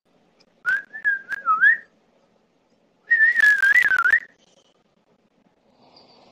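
Two short wavering whistles, each about a second long, the second one crackly, heard through a Ring doorbell camera's audio.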